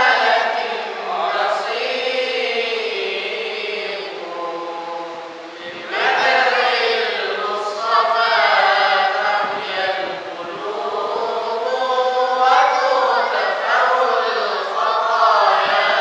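A group of men's voices chanting a melodic Islamic recitation together without instruments, led by a voice at a microphone. The chorus thins about five seconds in and comes back stronger a second later.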